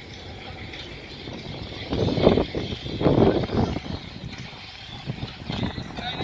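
Helicopter flying over, a steady high whine above a choppy low rotor rumble, with two louder rushes about two and three seconds in.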